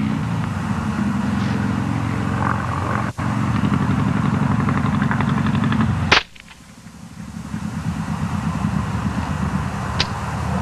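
A single gunshot about six seconds in, the loudest sound, over a steady low motor drone; after the shot the background drops away and swells back over the next two seconds.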